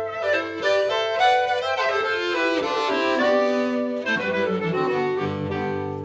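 Button accordion playing a traditional Swiss folk tune, a quick line of reedy notes over a sustained low bass.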